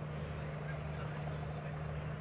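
Open-air ambience: a steady low hum under faint, distant voices.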